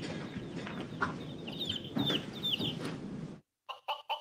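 Recorded chicken clucks played from a handheld sound-effect toy: a few short falling clucks over a hiss that cuts off suddenly near the end.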